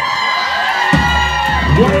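Live band music with a crowd cheering and whooping; a deep, sustained bass note comes in about a second in.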